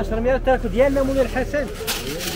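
People talking, with a short hiss just before the end.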